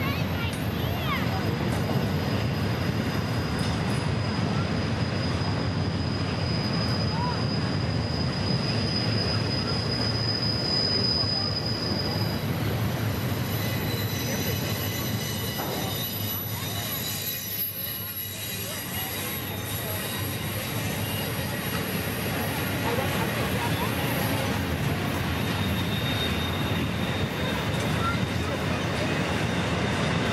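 Freight train cars of an intermodal train rolling past, with a steady rumble of wheels on the rails. Thin, high wheel squeal runs over it as the wheels grind against the rail on the tight curve.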